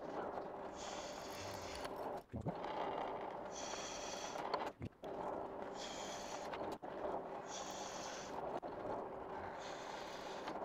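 Drill press running, its twist drill bit cutting into thick aluminium angle: a steady motor hum with four short spells of high-pitched cutting noise as the bit bites. The bit is cutting the metal cleanly rather than grinding it.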